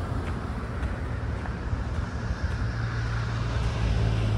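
Road traffic on the adjacent road: a steady low rumble of passing cars, with a deeper engine hum growing louder near the end as a vehicle approaches.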